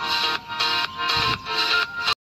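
Background music: a short pitched phrase repeating with a steady pulse about twice a second.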